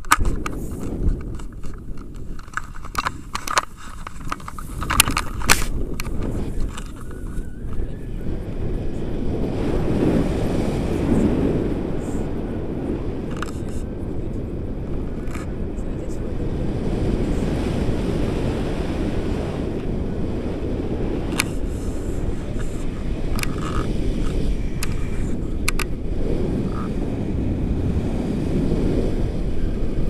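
Wind rushing over the action camera's microphone on a tandem paraglider in flight, a steady low rumble from about a quarter of the way in. Before it, a run of sharp knocks and rustles from the gear during the takeoff.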